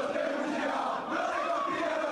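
A group of men chanting a football taunt song together in held, sung notes, with one voice leading into a microphone over the crowd noise of a packed room.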